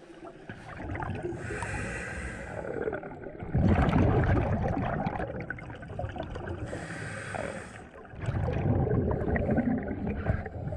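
Scuba diver breathing through a regulator underwater: a hissing inhale, then a long gurgling rush of exhaled bubbles, twice over.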